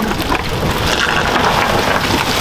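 Cast net full of live baitfish being hauled and dumped into a boat's live well: a steady, dense patter of many small taps and splashes as the fish flap in the mesh and water drains from it.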